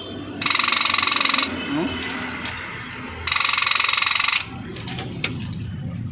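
Starter solenoid chattering in a very fast rattling buzz, twice for about a second each, as the ignition key is turned and the engine does not crank. It is the sign of a starting fault that the driver puts down to either the battery or the starter.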